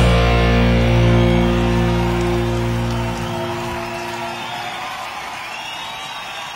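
Rock band's final chord ringing out on electric guitars and bass, slowly fading. The bass drops out about three seconds in and the guitars die away after it.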